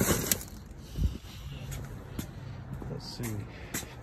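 Handling noise: a few light knocks and rustles as items are moved and set down, over a low steady hum.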